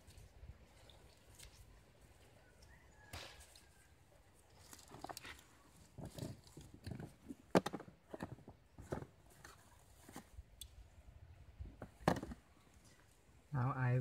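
Irregular clicks, taps and rustles of hands handling grafting tape and plastic, and rummaging among tape rolls and plastic bags in a plastic basin. The sharpest knock falls about halfway through.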